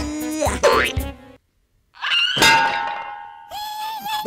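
Cartoon soundtrack of comic background music and sound effects: a rising sweep about half a second in, then a short break of silence. A sudden loud effect hit rings out about two seconds in, and another comes with the music near the end.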